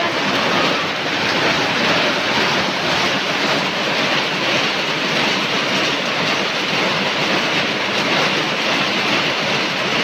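Heavy rain pouring down, a loud, steady rush with no letup.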